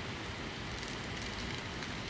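Lecture hall room tone: a steady, even hiss with no distinct events, in a pause between spoken passages.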